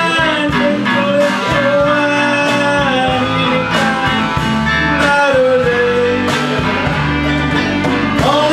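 Live country band playing: a voice singing long held notes that slide between pitches, over electric guitar, pedal steel guitar and a drum kit keeping a steady beat.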